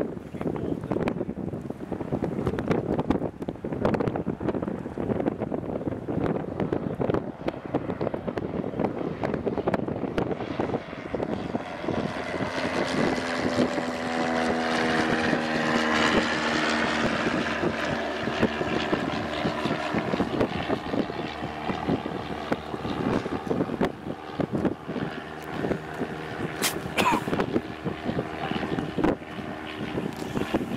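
Wind buffeting the microphone throughout, with the drone of a passing propeller aircraft's engine swelling in the middle and fading away.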